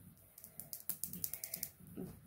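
Faint run of light, quick clicks and ticks, about a dozen over a second or so, from a cable and its plug being handled.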